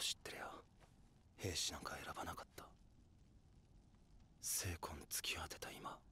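Quiet dialogue from the anime soundtrack, heard faintly in three short spoken phrases with pauses between.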